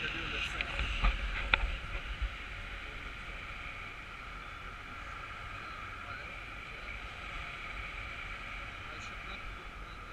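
Wind rushing over the camera in flight under a tandem paraglider: a steady hiss with a faint whistling band. Low buffeting and a few sharp knocks come in the first two seconds, then it settles.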